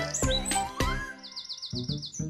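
Short cheerful music jingle with bird-like chirps: a few quick notes, then a fast run of about seven high, downward-sliding chirps in the second half.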